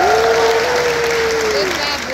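Audience applauding, with one long held call from a voice over it that swoops up at the start and falls away near the end.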